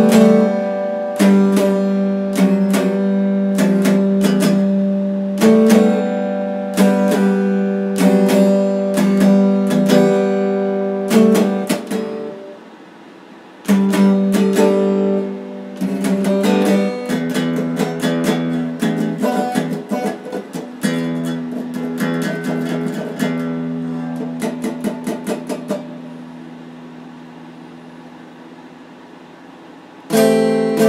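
Red Stratocaster-style electric guitar strummed in chords with picked notes. Around twelve seconds in, a chord rings out and fades before the strumming resumes, then comes a faster run of quick strokes, and a last chord decays over the final few seconds.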